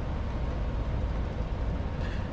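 Steady low rumble of background noise with a faint hiss, with no change or distinct event.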